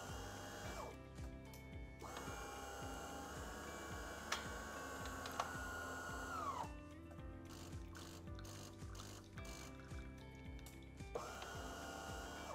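De'Longhi Dinamica espresso machine running its rinse cycle: the water pump hums in spells, the longest lasting about four seconds, as hot water is pushed through the circuit and out of the spout to warm it before brewing.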